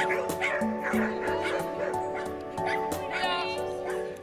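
Background music with dogs barking and yipping over it, and a higher yelp about three seconds in.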